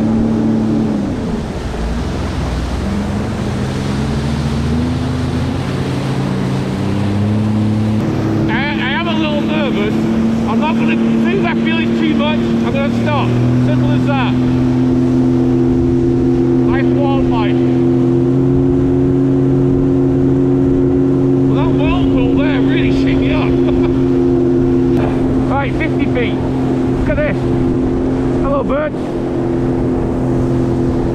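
Sea-Doo GTX 170 personal watercraft's three-cylinder engine running under way. Its pitch drops in the first couple of seconds as the throttle eases, then rises in steps about eight and thirteen seconds in and holds steady at cruising speed.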